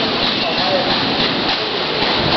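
Indistinct voices of people talking, half buried under a steady, loud hiss of noise.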